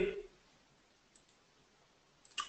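A couple of faint computer mouse clicks about a second in, against quiet room tone.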